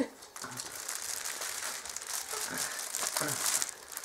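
Clear plastic bag around a T-shirt crinkling steadily as it is handled, for about three and a half seconds.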